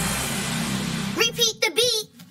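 A hiss of static-like noise over a low hum, then a short vocal phrase of a few syllables that cuts off suddenly at the end.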